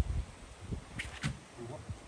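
Dull thumps and knocks of a man's hands and feet on a surfboard as he pops up from lying to standing, the loudest thump right at the start.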